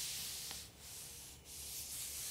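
Thin Bible pages rustling and sliding as a page is turned, in three short stretches of rustle with brief pauses between them.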